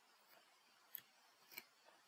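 Two faint clicks over near silence, about a second in and again half a second later: a computer mouse's buttons being clicked while dragging blocks in an editor.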